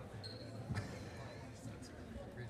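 Indistinct crowd and player chatter in a school gym, with a single basketball bounce on the hardwood floor a little under a second in.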